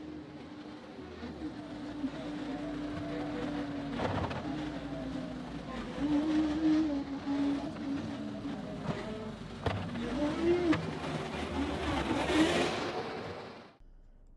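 John Deere 325G compact track loader's diesel engine working, its pitch rising and falling with occasional clanks, then fading out just before the end.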